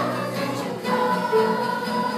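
Children's choir singing a song with musical accompaniment, holding notes that change about a second in.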